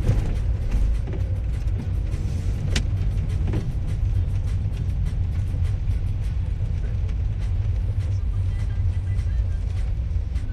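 Steady low rumble of road and engine noise inside a car's cabin as the car is driven.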